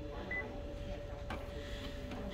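A photocopier's touchscreen gives one short high confirmation beep as its OK key is pressed, over the machine's steady hum. There is a single click about a second later.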